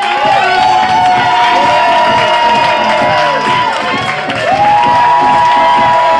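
Audience cheering and clapping, with several voices holding long high-pitched screams that fade about three and a half seconds in, then new screams rising a second later.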